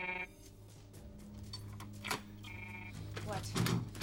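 Electronic keycard reader giving two short buzzes, one at the start and another about two and a half seconds in: the card is refused. A steady low hum runs underneath.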